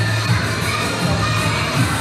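A crowd of children shouting and cheering, with loud music from PA speakers playing underneath.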